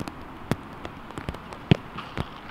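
A few short, sharp thuds of footballs being struck on an artificial pitch, the loudest near the end, with lighter ticks in between.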